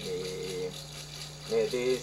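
A singer chanting a wordless melody with long held notes, over a steadily shaken rattle and a low steady hum. The voice holds a note at the start, breaks off, then comes back near the end.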